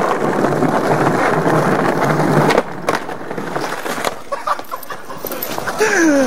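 Skateboard wheels rolling over stone paving, a dense rumble that cuts off abruptly about two and a half seconds in, followed by a couple of knocks. The ride ends in a bail: the skater is down and the board has rolled away.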